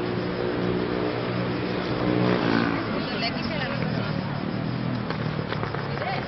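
A motor vehicle's engine running close by in street traffic, loudest about two and a half seconds in and then fading, over a background of city noise.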